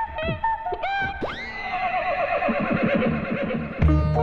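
Comic film background score: quick sliding notes, then about a second in a long call that sweeps up in pitch and quavers downward for about two seconds. Just before the end a new passage with a heavy low beat cuts in.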